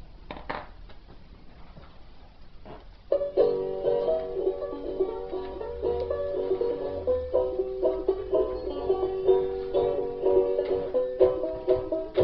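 Banjo picking a quick run of plucked notes. It starts about three seconds in, after a few faint clicks.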